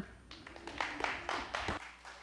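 Light, scattered clapping from a congregation, a few irregular claps, with faint voices in the room.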